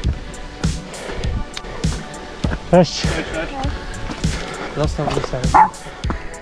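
A dog barks a few times about halfway through, answering a greeting, with background music underneath.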